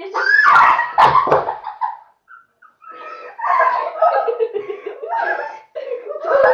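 Two girls squealing and laughing as they tumble out of a partner headstand, with a thud or two of bodies landing in the first second and a half. After a short pause the laughing and squealing starts again.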